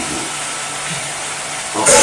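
Steady, fairly loud hiss of background noise on a lecture recording through a microphone. A man's voice comes back in near the end.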